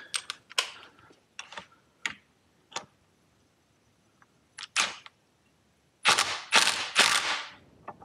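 Cordless impact driver tightening the nut on a moped's ignition rotor: one short burst a little before the middle, then three bursts in quick succession near the end, the loudest sounds here. Light clicks of the socket and tools come before.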